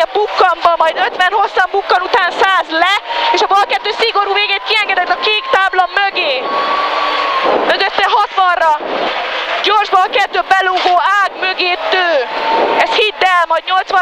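A co-driver's voice calling rally pace notes in Hungarian almost without pause, heard through the helmet intercom over the car's engine and road noise, with a rush of noise about six to eight seconds in.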